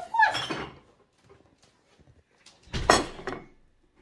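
A baby's short wordless squeal that bends up and down in pitch, then one loud thump about three seconds in.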